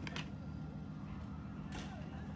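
Quiet, steady low hum of outdoor night-time street background noise picked up by a phone microphone, with a faint brief rustle near the end.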